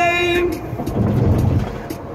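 A voice holding a sung note that breaks off about half a second in, then a low rumble inside a moving car's cabin, mixed with the song's backing music.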